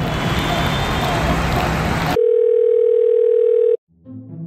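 Crowd chatter in a large hall for about two seconds, cut off abruptly by a loud, steady, mid-pitched electronic beep about a second and a half long, a sound effect added in editing. A brief silence follows the beep.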